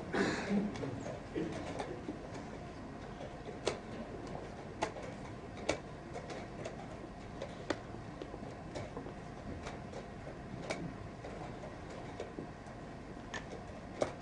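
Sharp isolated clicks at irregular intervals, about one every one to two seconds, from chess pieces being set down and a chess clock being pressed in a fast blitz game, over a faint steady hum.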